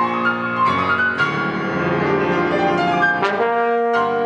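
Trombone and grand piano playing a classical piece together, piano notes moving under the brass; near the end the trombone settles on a loud held note.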